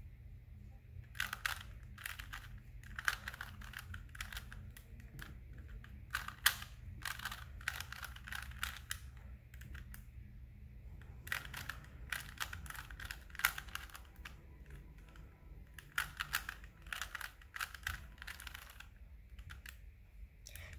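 Plastic layers of a 3x3 Rubik's cube clicking as they are turned by hand, in quick runs of several clacks with short pauses between: a sequence of turns carried out as a solving algorithm to place the last-layer corners.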